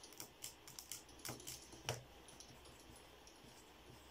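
Faint, quick plastic clicks of a pocket calculator's keys being pressed, several in the first two seconds with the loudest just before the two-second mark, then only faint light ticks.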